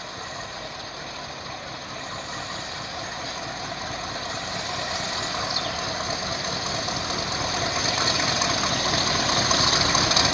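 Class 50 diesel locomotive, with its English Electric 16-cylinder engine, approaching under power. Its engine and running noise grow steadily louder as it nears.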